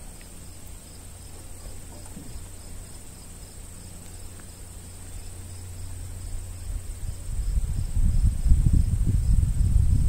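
Insects chirring steadily in the background, a faint high chirp repeating evenly over a thin high whine. A low rumble builds over the last few seconds and becomes the loudest sound.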